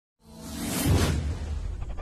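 Logo-intro whoosh sound effect that swells to a peak about a second in and fades, over a low steady bass.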